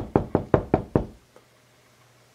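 Knocking on a paneled front door: six quick knocks in about a second, then one faint tap.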